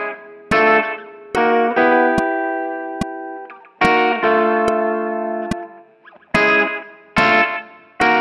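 Telecaster-style electric guitar playing four-note chord voicings slowly, at half speed. Six chords are struck, each left to ring and fade. A faint, steady click keeps time about once every 0.85 s.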